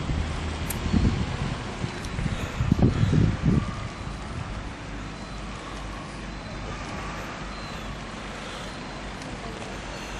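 Wind buffeting the microphone in low gusts, once about a second in and again in a longer spell around three seconds in, over a steady low engine hum.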